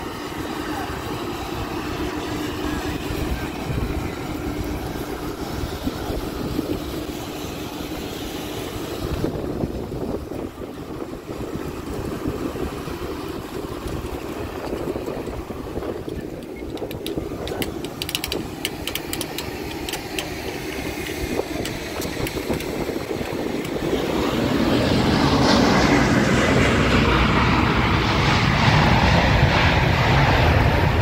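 Steady roar of aircraft engines on an airport apron, mixed with wind on the microphone. It swells louder about 24 seconds in.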